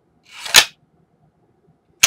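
SKS rifle's bolt being worked by hand: a short metal slide that builds to a sharp clack about half a second in.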